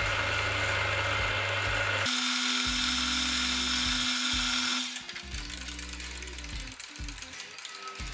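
Milling machine spindle running as a small twist drill bores into the end of a steel block: a steady whirring with a thin whine, changing abruptly about two seconds in and turning quieter after about five seconds. Background music with low bass notes plays underneath.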